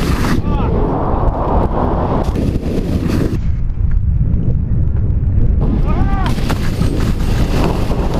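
Heavy wind buffeting on a skiing action camera's microphone at speed, with skis hissing and scraping on snow. The scraping hiss cuts out for about two seconds in the middle while the skis are off the snow in the air, then returns. There are brief shouts near the start and again about six seconds in.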